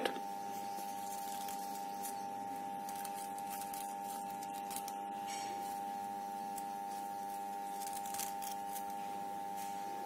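Faint, scattered rustles of crepe paper as fingers open out the petals of paper flowers, over a steady high-pitched background hum.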